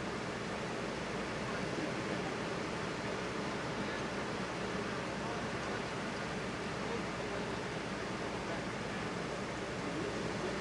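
Steady, even rushing noise of wind and surf, with no single sound standing out.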